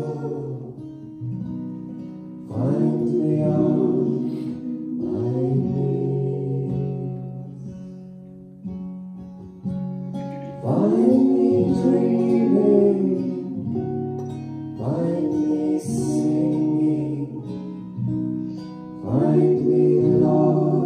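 Acoustic guitar strummed under singing voices, the song moving in phrases of long held notes that swell and fade every few seconds.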